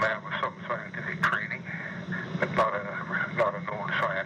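Speech only: a man talking in a recorded telephone interview, his voice narrow and phone-like over a steady low hum.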